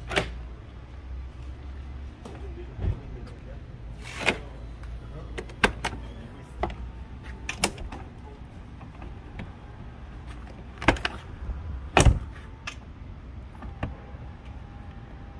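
Clicks and knocks from a Mercedes G-Class door's handle, latch and locks, about a dozen spread through, the loudest a heavier thud about twelve seconds in. Between them a faint motor whine comes from the retrofitted soft-close mechanism pulling the door shut.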